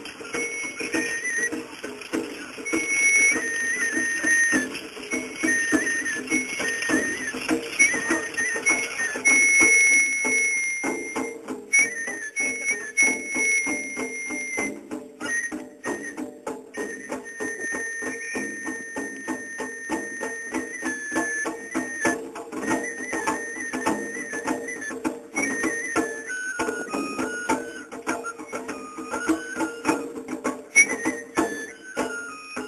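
Japanese festival hayashi music: a high bamboo flute plays a melody of long held notes over a quick, steady run of percussion strokes.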